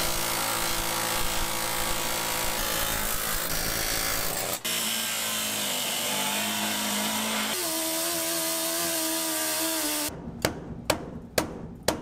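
A pneumatic air chisel hammering at rusted truck-frame steel, then an angle grinder cutting through the steel, its pitch stepping up partway through. About ten seconds in the tool noise stops and several sharp hammer blows strike the metal.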